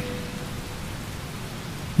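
A steady, even hiss of background noise, like rain.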